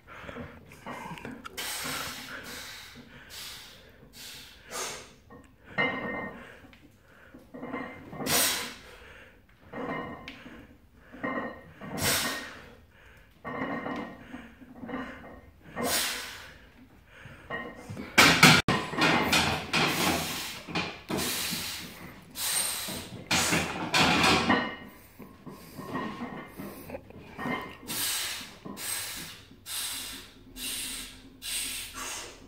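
A powerlifter's forceful breathing during a set of barbell back squats: a burst of breath every two to four seconds, and heavier, nearly continuous breathing for several seconds a little past the middle.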